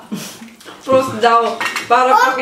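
Drinking glasses and cutlery clinking against the table and plates, with a voice starting up about a second in.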